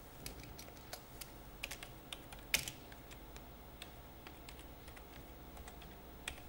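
Faint, irregular keystrokes on a computer keyboard as text is typed, with the clicks bunched in the first three seconds and thinning out after that. The sharpest keystroke comes about two and a half seconds in.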